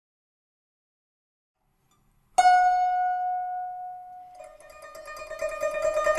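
Silence, then about two and a half seconds in a single plucked guzheng string rings out and slowly fades. From about four and a half seconds a slightly lower note is played in rapid tremolo, growing louder toward the end.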